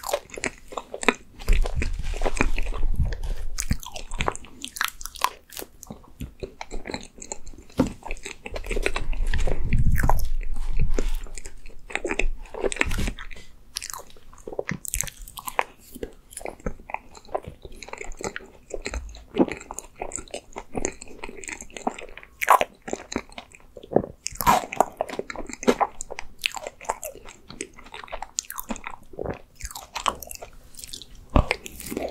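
Close-miked eating sounds of a person spooning and chewing ice cream cake: wet mouth smacks, chewing and small sharp clicks. Two spells of low rumble, the louder one about a third of the way through, are the loudest part.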